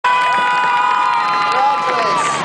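Large stadium crowd cheering and shouting, with several long, high-pitched screams held over the din.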